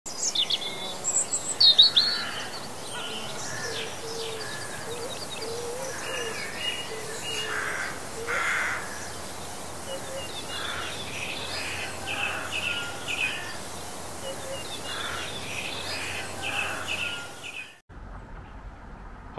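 A chorus of songbirds chirping and singing, many short overlapping calls and trills, cutting off suddenly near the end.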